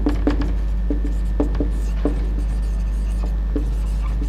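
A marker pen writing on a whiteboard: short scratchy strokes and taps of the tip as words are written. A steady low hum runs underneath.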